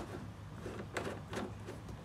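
Plastic twist cap being screwed onto the threaded spout of a plastic water jug: a click as it goes on, then a few faint clicks and scrapes as it is turned.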